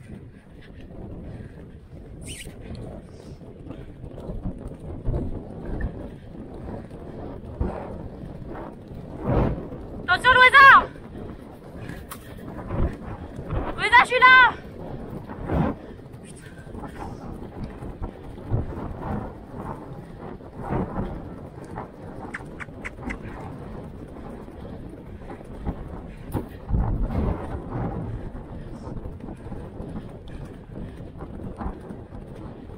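A pony galloping over turf, heard from the rider's camera with wind on the microphone. A voice calls out twice in short high-pitched cries, about ten and fourteen seconds in.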